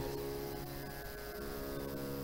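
Faint steady musical drone: a held chord of several sustained tones, shifting slightly a little past halfway.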